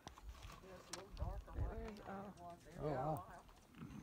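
Quiet, indistinct talking of a few people, with a brief low rumble about a second in.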